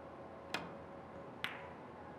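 Two sharp clicks of three-cushion billiard balls, about a second apart: the cue tip striking the cue ball, then the cue ball hitting another ball. The second click rings briefly.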